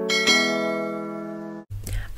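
Bell-like chime sound effect with several ringing tones at once. It is struck again about a quarter second in, fades, and is cut off abruptly about one and a half seconds in.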